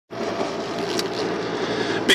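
Steady road and engine noise inside a moving car's cabin, heard through a tablet's microphone, starting abruptly.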